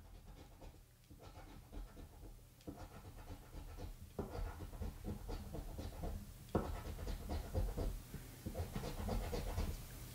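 A coin scraping the silver latex off a paper scratch-off lottery ticket in rapid, repeated short strokes, growing louder about halfway through.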